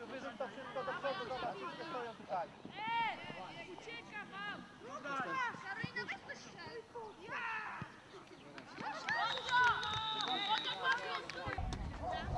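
Several high voices calling out on a football pitch, short overlapping shouts with no clear words.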